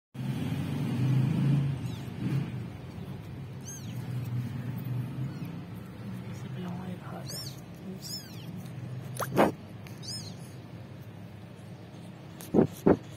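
A very young, hungry kitten mewing: several short, thin, high-pitched cries, the loudest about nine seconds in, over a low background murmur.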